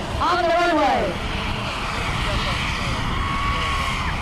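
A brief shout of falling pitch at the start, then a steady wash of outdoor noise on an airport apron during a team plane pull, with a faint steady high whine near the end.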